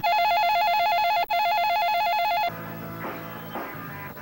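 Electronic telephone ringer trilling loudly, a rapid two-note warble in two bursts of about a second each with a brief break between. Rock guitar music takes over about two and a half seconds in.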